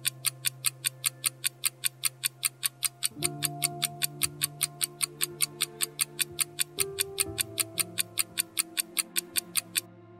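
Quiz countdown timer sound effect: fast, even clock-like ticking at about four to five ticks a second that stops just before the timer reaches zero. Soft sustained background music plays underneath, its chords shifting a few times.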